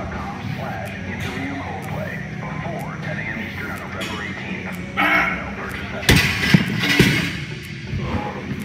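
Background music playing. About six seconds in, the barbell and its heavy weight plates crash onto the gym floor with several sharp clattering knocks inside about a second.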